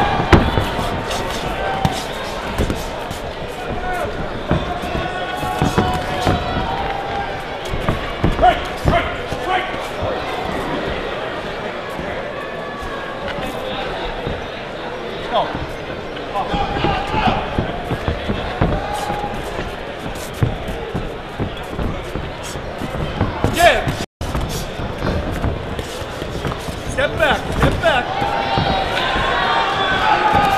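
Live boxing bout: spectators talking and calling out, over repeated sharp thuds from the ring as the boxers throw punches and move on the canvas.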